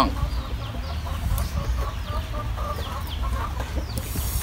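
Chickens clucking softly in a string of short calls through the middle, with a few short high chirps from small birds, over a steady low rumble.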